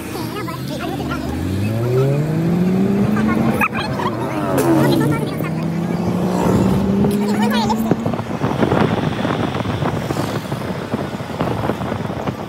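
Bus engine accelerating: its pitch climbs steeply, drops at a gear change about three and a half seconds in, then climbs slowly again until about eight seconds in, over road noise.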